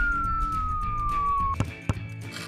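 Cartoon falling-whistle sound effect: one long whistle sliding slowly down in pitch that stops about one and a half seconds in, followed by two sharp knocks, over background music.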